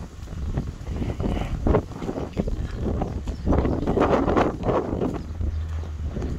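Wind buffeting the phone's microphone with a low rumble, under uneven footsteps on a gravel track. A louder gust swells up about halfway through.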